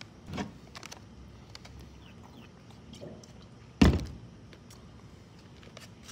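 Handling an MRE food pouch: faint scattered crinkles and clicks, and one loud, sharp thump a little under four seconds in.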